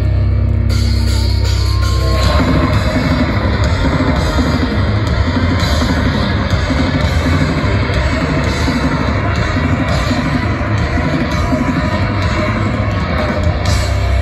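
Loud heavy rock band playing live through a festival PA: a held low bass note rings for about two seconds, then the full band crashes in with distorted guitars and drums in a steady pounding rhythm.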